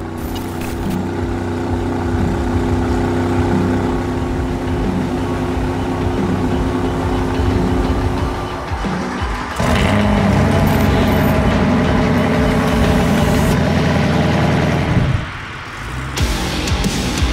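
Jet boat engine running hard at speed, mixed with a music soundtrack; it gets louder and busier about halfway through and dips briefly near the end.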